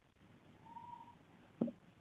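Faint sounds of someone drinking from a mug, with a short swallow near the end. A faint, brief, steady high tone sounds about halfway through.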